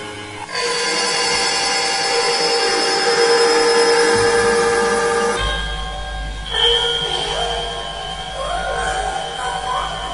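Computer-generated electronic soundtrack of sustained, layered tones. A new layer of held tones comes in about half a second in, a deep low drone sets in about five and a half seconds in, and wavering tones that glide up and down come in near the end.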